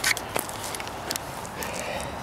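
A few soft footsteps and camera-handling knocks as a handheld camera is carried and lowered, over faint outdoor background noise.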